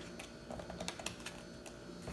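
Faint light clicks and rustles of small cardboard playing cards being drawn from a deck and slid into a fanned hand.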